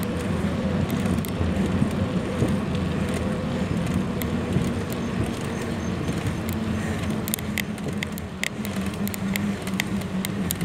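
A vehicle engine running steadily under way, with road and wind rumble. From about seven seconds in, a series of sharp clicks or rattles joins it.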